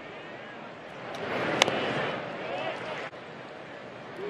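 Ballpark crowd murmur, with one sharp pop about a second and a half in: a pitched fastball smacking into the catcher's mitt for a ball.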